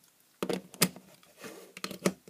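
Several short, sharp plastic clicks and knocks as a small plug-in lithium cell charger, with fold-out mains pins, is handled and pushed into a mains socket. The sharpest click comes a little under a second in.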